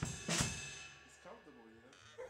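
Drum kit played by hand: two strikes with snare and cymbal in the first half-second, whose ringing then dies away.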